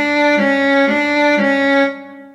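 MuseScore 3's synthesized viola playing four quarter notes, about half a second each: D, D-flat, D, then a D retuned 100 cents down. The last note sounds a semitone lower, as a D-flat.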